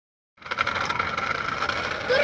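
Small electric motor of a toy truck whining steadily with a fast rattling of its gears, starting about half a second in.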